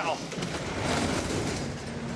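Roll-up rear door of a box truck's cargo area being pulled down: a broad rushing rattle that swells about a second in and then eases off.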